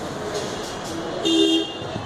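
A vehicle horn gives one short honk about a second and a half in, over steady background traffic noise.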